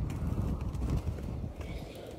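Footsteps over burnt, ash-covered ground, a run of irregular short strikes, over a steady low rumble on the microphone.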